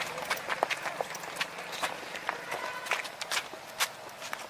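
Footsteps of a group of people running on a paved road: shoes slapping the surface in quick, uneven overlapping steps.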